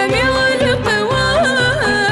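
Gharnati (Andalusian) song: a woman sings a richly ornamented vocal line, with quick pitch turns and glides, over instrumental accompaniment with a steady low beat.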